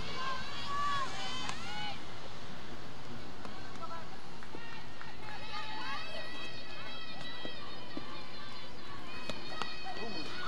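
Distant high voices calling out across an outdoor field over a steady background hiss. Short sweeping calls come early, then longer held calls from about halfway through.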